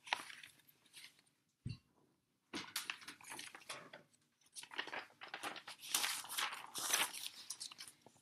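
Pages of a large picture book being handled and turned: paper rustling and crinkling in irregular bursts through the latter part, after a single soft thump near the start.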